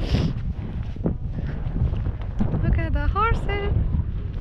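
Wind buffeting the camera's microphone, an uneven low rumble throughout, with a short high voice-like sound about three seconds in.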